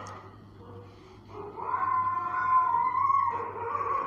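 Marker squeaking as it is drawn across a white board: one long, slightly wavering squeal of about two and a half seconds, starting over a second in.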